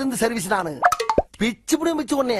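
A man speaking film dialogue, with a short click about a second in.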